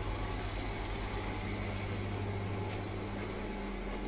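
Steady low hum with an even hiss over it, from aquarium air pumps and filters running.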